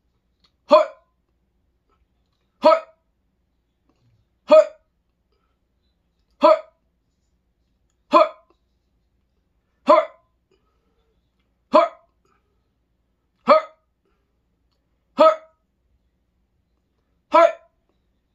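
A man hiccuping: ten short, even hiccups, one about every two seconds, keeping a steady rhythm.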